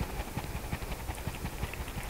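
Water sloshing and swishing inside an upside-down plastic water bottle as it is swirled quickly in circles to form a vortex, with many soft, irregular knocks and clicks from the bottle moving in the hand.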